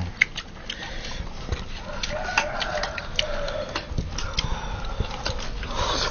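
Irregular light clicks and taps of chopsticks against a metal wok and a ceramic rice bowl while eating.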